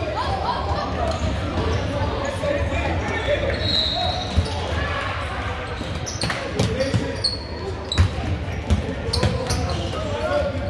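Basketball bounced on a hardwood gym floor, sharp bounces coming more often in the second half, under the chatter of players and spectators in a large gymnasium.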